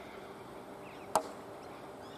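Faint bird calls over a steady low hum, with one sharp knock about a second in.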